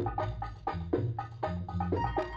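Instrumental start of an Egyptian taqtuqa in maqam rast: percussion beating a brisk, even rhythm of about five strokes a second under pitched instrument notes, starting suddenly after a brief silence.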